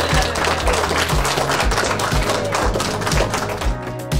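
Background music with a steady beat, about two beats a second, over applause that fills the first second or two.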